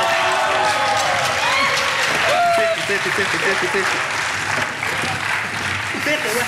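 Applause running steadily throughout, with a few shouting voices rising and falling over it.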